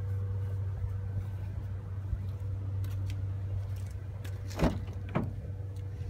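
A car door on a 2013 Toyota RAV4 being handled and opened: two sharp knocks about half a second apart near the end, over a steady low hum.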